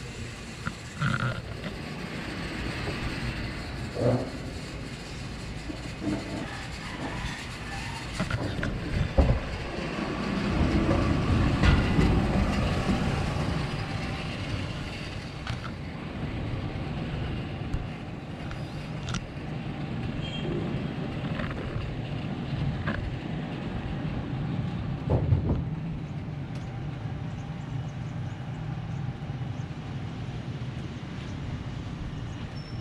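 Outdoor background noise: a steady low rumble that swells for a few seconds near the middle, with a few scattered knocks.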